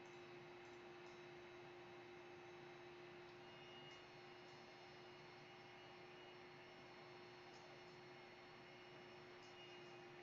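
Near silence: a low, steady electrical hum under faint hiss, with a few very faint clicks.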